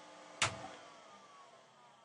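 The closing seconds of an electronic track. A quiet sustained synth tone is cut by one sharp hit about half a second in, then faint falling tones slide down and fade out, like a power-down.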